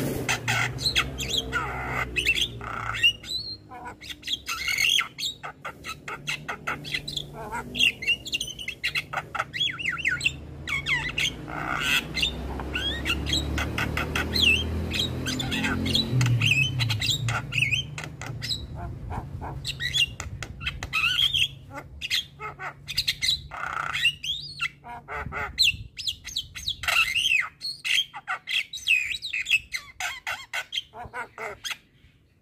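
Caged Javan myna in full song: a long, busy run of harsh squawks, chattering and whistled notes, each call short and changing in pitch, with no let-up. A low rumble sits under the calls for about the first half.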